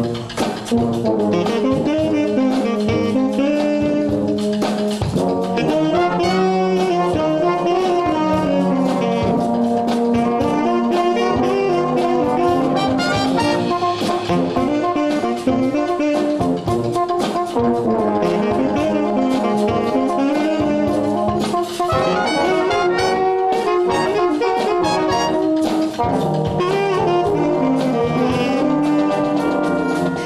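Tenor saxophone soloist playing a melody over a concert band of brass (tubas, euphoniums, trumpets, trombones) and drums, the whole band playing together.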